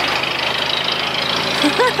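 A vehicle engine idling steadily close by, with the even rumble of street noise around it.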